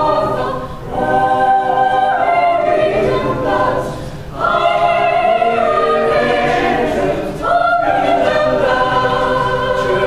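Mixed teenage choir singing a cappella in sustained, held chords, with short breaks about a second in and about four seconds in.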